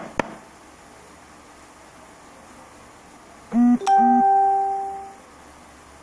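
An electronic chime about three and a half seconds in: two short, low buzzing notes, then one clear ringing tone that fades out over about a second and a half. Before it there are a couple of clicks and then faint steady room tone.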